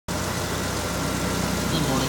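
2006 Ford F-150 pickup engine idling steadily, heard with the hood open.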